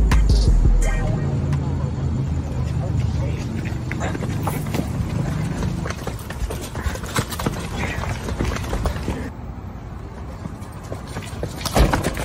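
Soundtrack of a rap music video's intro playing back. A deep bass tone holds for about the first second, then gives way to a quieter stretch of short, sharp knocks and indistinct voices. It quiets further near the end, then a sharp hit comes just before the close.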